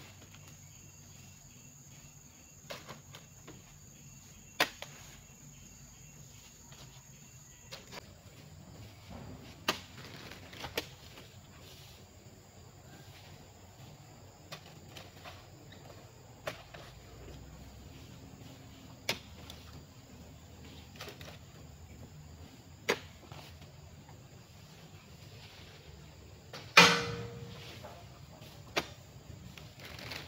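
Oil palm fruit bunches being speared with a long-handled metal spike and tossed up onto a truck's load: sharp knocks and thuds every few seconds, the loudest near the end with a short ring. A steady high insect tone runs through the first quarter.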